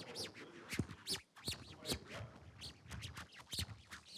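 Irregular scratchy clicks and rustles of a microphone being handled as it is passed to someone in the audience.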